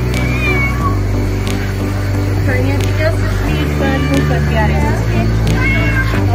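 Domestic cat meowing several times while being bathed, short rising and falling calls, over background music with held bass notes and a steady beat.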